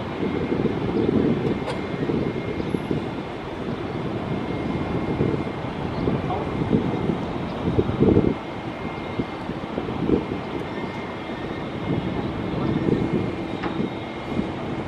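Distant jet noise of an Airbus A330-303 with General Electric CF6 engines coming in to land: an uneven low rumble that swells loudest about eight seconds in, around touchdown, then eases as the airliner rolls out.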